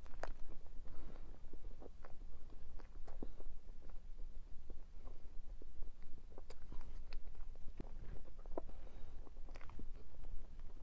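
Close-miked eating of soft swirl layer cake from a spoon, heard as scattered small wet mouth clicks and smacks with a steady low hum beneath.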